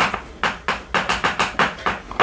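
Chalk writing on a chalkboard: a quick run of short taps and scratches, about four strokes a second, as words are written out.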